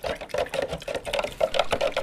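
A fast, even run of short rubbing or swishing strokes, about six a second, from a hand working inside a plastic container of nutrient water.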